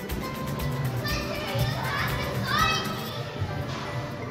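Children playing and shouting in a large indoor play area, with high-pitched calls about a second in and again past the halfway point, over steady background music.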